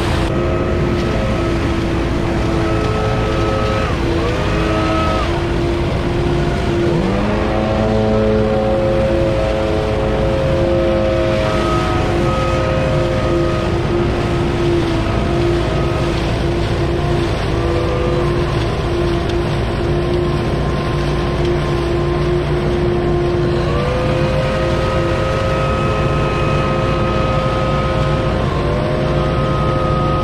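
Truck-mounted Billy Goat debris loader running steadily as leaves are fed into its intake hose, with a gas backpack leaf blower over it. The blower's pitch rises and holds several times, most clearly about a quarter of the way in and again past three-quarters.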